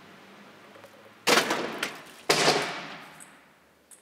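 Two loud crashes about a second apart, each dying away over about a second, from parts of a chain-reaction machine falling, such as a dresser drawer dropping to the floor.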